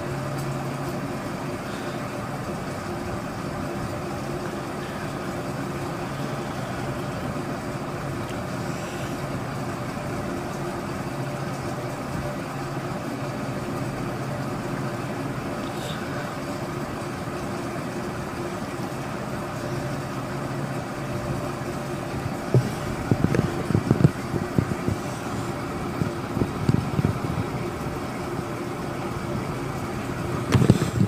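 Steady background hum with a faint even drone, such as a fan or distant traffic. From about three-quarters of the way in it is broken by irregular low thumps and rustles of a phone being handled.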